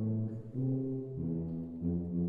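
Small brass ensemble of French horn, tuba and trombone playing held low chords that shift to new notes roughly every half-second to a second.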